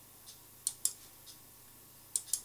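Computer mouse button clicking: two sharp clicks about a fifth of a second apart near the middle, with a couple of fainter ticks either side.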